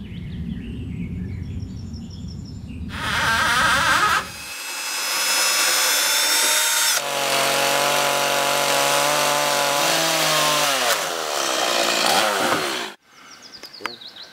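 A low rumble, then a Stihl chainsaw cutting a wooden beam at high revs for about ten seconds. Near the end its pitch falls as it slows, and the sound cuts off suddenly.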